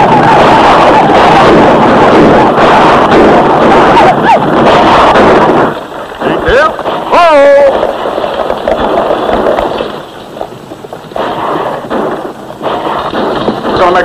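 Loud din of a mounted attack: many galloping horses and yelling riders, with shots. About six seconds in it drops to a quieter scene of horses and wagons, and a horse whinnies a second or so later.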